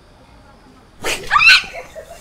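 A woman's short, loud startled scream about a second in, lasting under a second.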